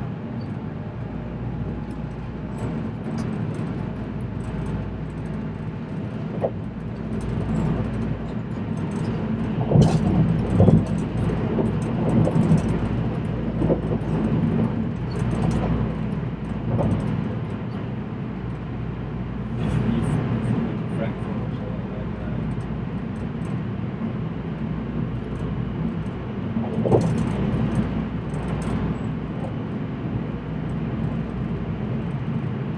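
Electric train running, heard from inside the passenger car: a steady low rumble and hum with scattered clicks and knocks from the wheels on the track. The noise grows louder for a few seconds around ten seconds in.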